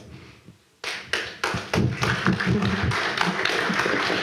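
Audience applauding: after a brief lull, scattered claps start about a second in and quickly thicken into steady applause.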